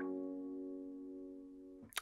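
A strummed four-string F major chord on an acoustic guitar with a capo at the first fret, ringing out and slowly fading, then muted just before the end.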